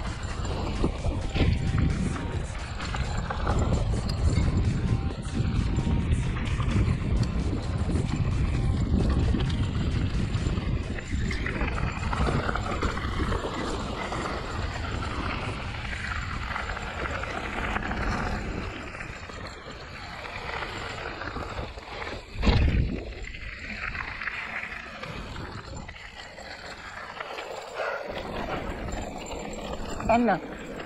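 Riding noise from a hardtail mountain bike rolling fast down a gravel trail: wind rumbling on the microphone, tyres crunching over gravel and the unsuspended frame rattling. It eases off in the last third as the bike slows, with one sharp knock about 22 seconds in.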